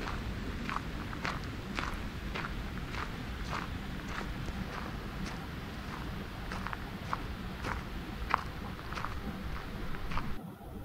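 Footsteps walking at an even pace on a gravel path, about two steps a second, over a steady low rushing noise.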